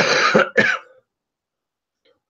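Two short, rough bursts of a person's voice in the first second, a laugh or cough-like sound, then quiet.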